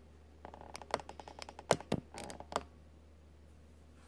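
A baby's fingers tapping and scratching a plastic baby bottle on a high-chair tray: a quick run of light clicky taps for about two seconds, one sharper knock near the middle, then they stop.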